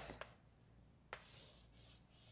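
Faint writing sounds: a single tap as the writing tip meets the surface about halfway through, then a soft, high scratching as it is drawn across.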